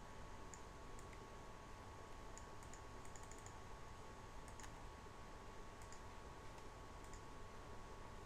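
Faint computer mouse clicks, short high ticks scattered through, over a steady low electrical hum with a thin whine.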